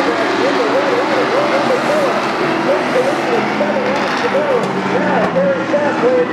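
A pack of NASCAR race trucks running at speed around a short oval track, their engines a steady continuous roar, with a voice speaking over it throughout.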